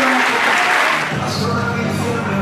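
A large audience applauding; about a second in, music starts playing over the applause.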